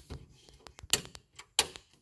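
Rocker power switch on a tool chest's built-in power strip being clicked twice, about a second in and again just over half a second later.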